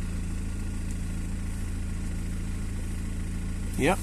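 BMW 320d's four-cylinder diesel engine idling steadily in park, heard from inside the cabin.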